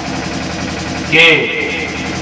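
A man's amplified voice through a public-address system: about a second of pause over a steady background hum, then one drawn-out spoken word.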